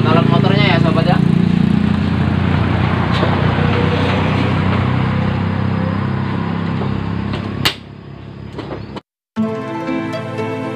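A small engine runs steadily with a low rumble, then stops short at a sharp click about three-quarters of the way through. After a brief cut, soft background music begins near the end.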